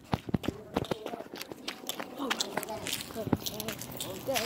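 Footsteps of someone on the move, a quick irregular series of knocks, with short bits of voice or breathing in between.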